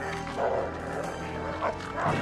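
Cries of a giant rat, an R.O.U.S. (rodent of unusual size), as it attacks a man on the ground: two short cries, about half a second in and again near the end. Film score music plays underneath.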